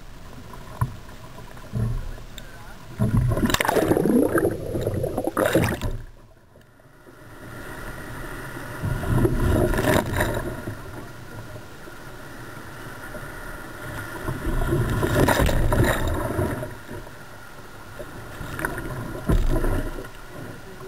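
Seawater rushing and splashing over a sea kayak's deck as it paddles through breaking surf, in four loud surges of whitewater with a short muffled lull about six seconds in.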